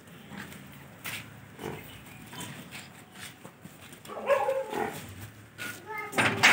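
Banni water buffalo calling: a few short, noisy calls, then a louder, pitched call about four seconds in.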